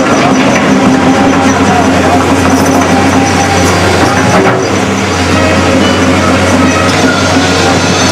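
Volvo crawler excavator's diesel engine running steadily as the machine swings and travels on its tracks, a constant low hum with noise over it.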